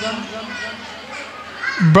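Faint children's voices chattering in the background during a short pause in a man's amplified talk; he starts speaking again near the end.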